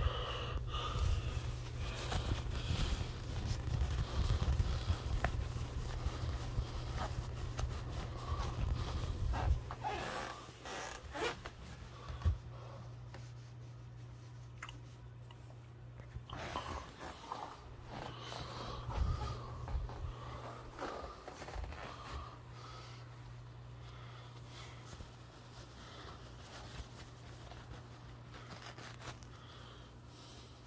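Rustling and handling noise as neckties are taken out of their packaging and hung on a tie hanger, with scattered clicks and knocks. Busier and louder for about the first ten seconds, then quieter and sparser.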